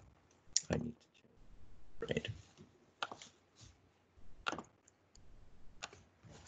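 Scattered clicking at a computer keyboard and mouse, single clicks and small clusters with short gaps between them, while the screen is switched back to the PowerPoint slides.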